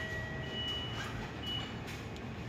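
Electronic beeps: a steady high tone for about a second, and two short, higher beeps about a second apart, over a low background hum.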